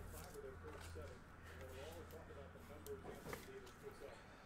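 Quiet room tone with a steady low hum and faint voices in the background, and a few soft clicks about three seconds in.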